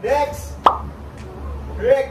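A single short, sharp pop about a third of the way in, set between brief wordless voice sounds, over a steady low hum.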